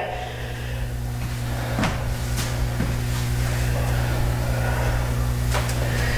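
Steady low room hum, with a few faint light knocks about two seconds in and again near the end.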